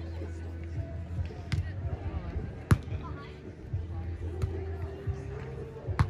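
Sharp slaps of hands striking a beach volleyball during a rally: a lighter contact about one and a half seconds in, the loudest about a second later, and another at the very end. Background music with a steady bass and faint voices runs underneath.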